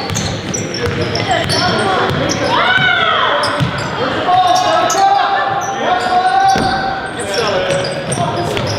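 Basketball game sounds in a large gym: the ball dribbled on the hardwood court, sneakers squeaking, and players and spectators shouting, with one long held call in the middle.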